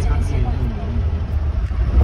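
Steady low rumble and road noise of a moving vehicle heard from inside its cabin, with a man's voice over it in the first second.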